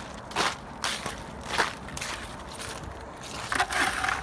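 Footsteps crunching in wet, crusty snow over leaf litter, a few uneven steps with louder crunching near the end.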